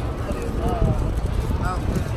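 Indistinct voices of a group talking close to a phone microphone, over a steady low rumble of outdoor street noise.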